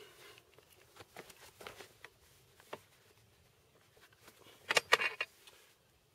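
Quick-change barrel of a Breda Model 37 heavy machine gun being released on its interrupted thread and drawn out of the receiver: a few faint metal clicks, then a quick run of sharp metallic clacks about five seconds in.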